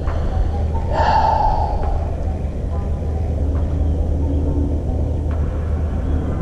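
Outdoor streamside noise: a steady low rumble of wind and moving water on the microphone, with a brief noisy rush about a second in.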